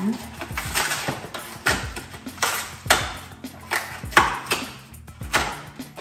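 Cardboard soda-can box being torn open at its end by hand: a string of sharp rips and knocks from the tearing flap and the box being handled. Quiet background music runs underneath.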